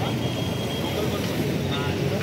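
Steady hum of road traffic, with faint voices in the background.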